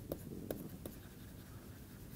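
Faint taps and scratches of a stylus writing on a pen tablet, a few distinct strokes in the first second, then fainter.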